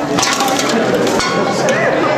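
Costumes of plastic bags, bubble wrap and tin cans crinkling, rustling and clinking as the wearers roll on the floor, with a dense run of crackles in the first second, over crowd chatter.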